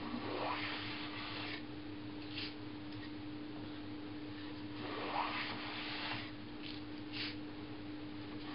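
Rider No 62 low-angle jack plane shaving a spruce board: two long planing strokes, each a scraping swish of the iron cutting that lasts about a second and a half, one near the start and one about five seconds in. Short scrapes come between them as the plane is drawn back and reset.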